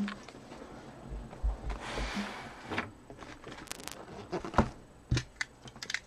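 Cardboard hobby boxes and their plastic wrap being handled: a quiet rustle with a few short taps as the boxes knock against each other and the table.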